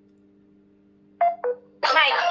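A faint steady electronic hum while a phone video call loads, then a little after a second in two short tones, the second lower, and near the end loud voices suddenly coming through the phone's speaker as the call connects.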